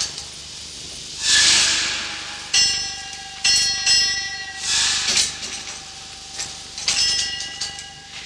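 A 1906 twin steam winding engine at work: bursts of steam hissing alternate with metallic clangs that ring on for a moment, over a faint steady tone.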